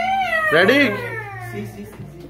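A child's high-pitched voice calling out in long, gliding tones, with a quick up-and-down call about half a second in.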